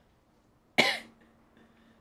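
A single short, sharp cough about a second in.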